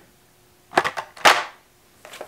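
Two short rustles of a blister-carded toy car's plastic-and-cardboard packaging being handled and set down, about half a second apart.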